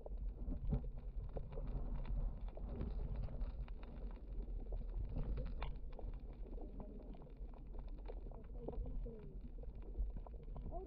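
Muffled underwater ambience picked up by a camera in its waterproof housing: a steady low rumble of water with scattered small clicks and knocks.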